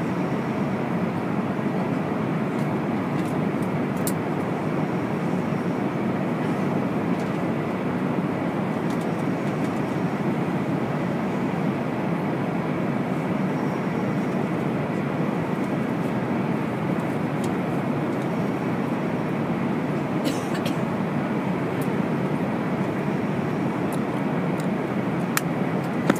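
Airliner cabin noise at cruising altitude: the steady, even rush of the jet engines and airflow past the fuselage, with a few faint clicks.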